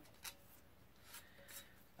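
Near silence, with three faint clicks from the metal handle sections of a folding shovel being fitted together by hand.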